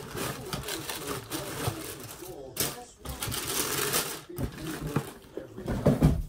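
Paper rustling and crinkling as it is handled, with scattered clicks, then a louder cardboard shoebox knock near the end.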